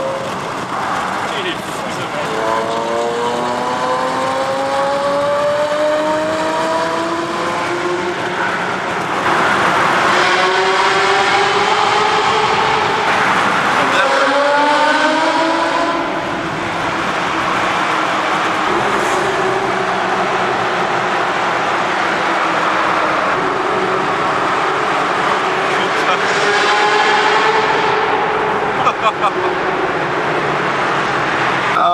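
A Ferrari sports car's engine accelerating hard through the gears several times, each run a rising pitch that drops at the upshift, over tyre and road noise. The second half is inside a road tunnel, and a few short sharp cracks come near the end.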